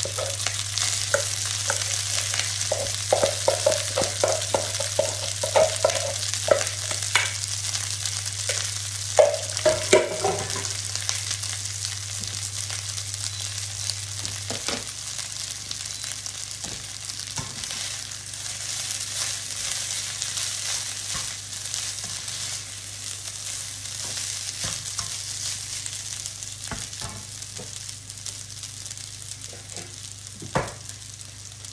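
Garlic in oil sizzling steadily in a nonstick frying pan as cooked rice is scooped into it from a pot, with scraping and knocking of the utensil against the pot in the first ten seconds or so. A low steady hum runs underneath and stops about halfway through.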